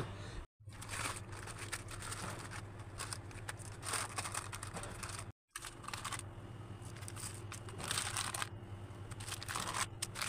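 Plastic sheet crinkling and rustling as soft, freshly cut blocks of homemade soap are pulled apart and set down on it, over a steady low hum. The sound drops out to silence twice, briefly, about half a second in and about five seconds in.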